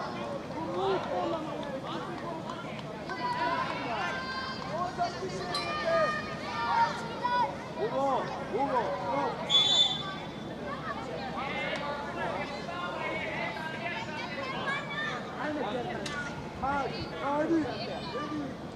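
Scattered shouts and calls of players and spectators at a youth football match, with no clear words. A short, high, steady note sounds about halfway through.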